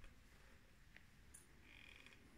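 Near silence: room tone, with a couple of faint clicks.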